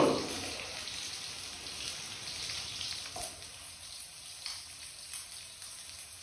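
Pieces of fish frying in oil in a pan on a portable gas burner: a steady sizzle with a few faint crackles in the second half.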